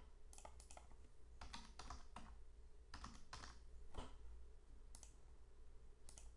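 Faint typing on a computer keyboard: irregular keystrokes in short runs with pauses between them.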